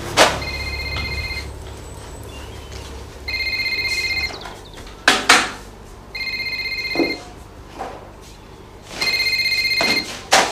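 Phone ringing with an electronic trill: four rings about a second long, roughly three seconds apart. A few sharp knocks and thumps fall between the rings.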